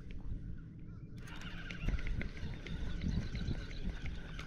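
Spinning reel being cranked to bring in line after a bite, its handle and gears giving irregular clicks that grow busier about a second in, over a steady low rumble.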